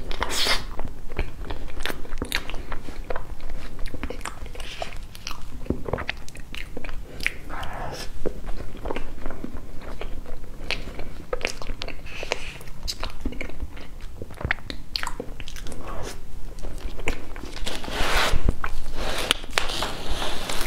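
Close-miked chewing and mouth sounds of someone eating soft cream sponge cake: a steady run of small wet clicks and smacks, with a louder stretch near the end.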